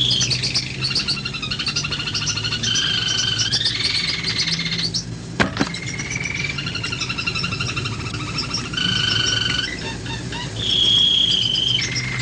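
A bird singing a varied song of held whistled notes and fast trills, with a steady low hum underneath. One sharp click comes about five and a half seconds in.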